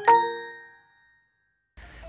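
The last note of a quick, bell-like jingle: one struck, chime-like note rings out and fades away within about a second. Near the end, a faint background music bed comes in.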